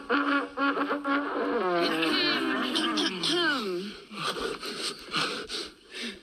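A sung song ends on a steady held note. Then voices call out with swooping, falling pitches.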